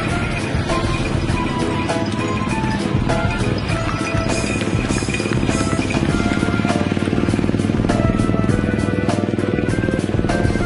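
Background music with melodic notes over a steady beat.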